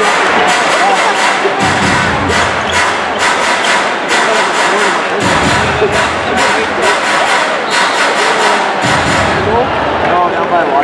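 Arena crowd chatter under music over the public-address system with a steady beat of about two beats a second, which drops away near the end.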